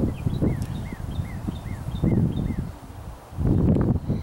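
A bird calling in a quick series of short, arched chirps, about four a second for some two seconds, over uneven low rumble of wind on the microphone.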